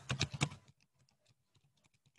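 Computer keyboard typing: a quick run of keystrokes in the first half-second or so, then a few faint, scattered key taps.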